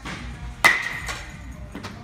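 Baseball bat striking a ball: one sharp, loud crack with a brief ringing tone, followed by two fainter knocks. Background music plays throughout.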